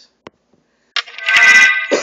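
A short electronic ringtone-like chime, several steady tones sounding together for about a second, comes in abruptly about a second in after a faint click.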